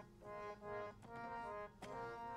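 Harmonium playing a soft melody, held reed notes stepping from pitch to pitch, with a single light tabla tap near the end.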